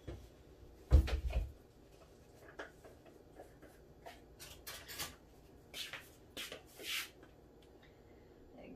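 Kitchen handling sounds: a heavy thump about a second in, like a cupboard door knocking shut, then several light clicks and taps of things being moved on the counter.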